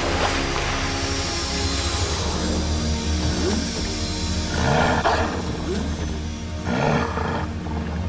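Background score with long held notes over a low drone, and a wolf growling twice, about five and seven seconds in.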